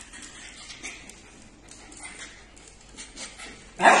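A small dog's sudden, loud vocalization near the end, after only faint scattered sounds before it.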